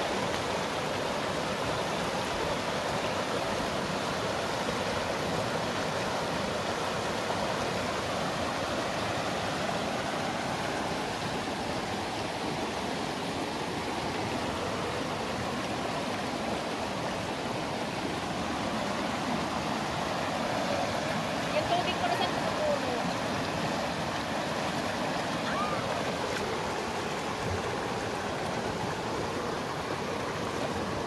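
Shallow creek rushing over rocks in a riffle, a steady even rush of water.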